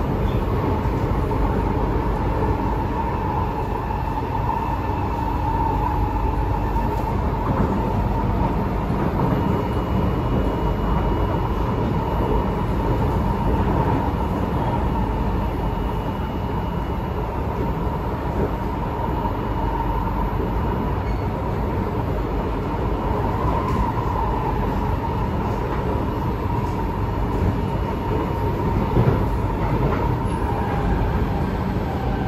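Inside a C751B MRT train running between stations: steady wheel-on-rail rumble with a constant mid-pitched hum, and a faint higher whine for several seconds in the middle.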